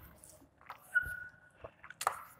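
Chalk writing on a blackboard: a few short scratches and taps, with a brief high squeak from the chalk about a second in.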